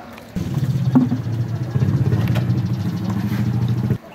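A small engine running with a low, steady drone that comes in abruptly about a third of a second in and cuts off sharply at the end.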